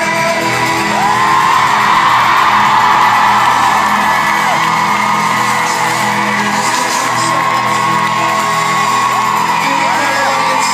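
Live pop-rock band playing, with guitars, drums and singing, while the crowd whoops and screams. It is recorded loud and rough on a phone in the audience.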